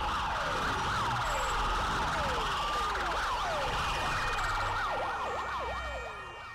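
Several sirens wailing at once, their pitch sweeping down over and over in overlapping cycles over a low rumble, fading out near the end.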